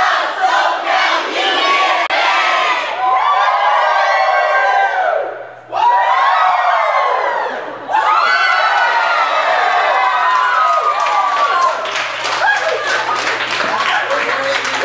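A large group of young people shouting and cheering together on a count of three, with two short breaks about five and eight seconds in, then cheering and laughing with some clapping near the end.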